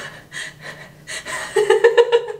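A woman gasping and breathing in short bursts, then letting out a sustained pitched cry about one and a half seconds in.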